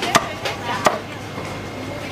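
Meat cleaver chopping through a large fish on a chopping block: two sharp chops less than a second apart with a lighter stroke between them.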